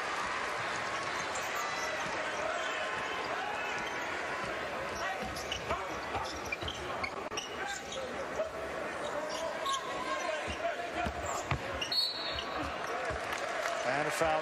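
A basketball dribbling on a hardwood court over the steady murmur of an arena crowd. Near the end comes a short, shrill whistle: a referee calling a foul.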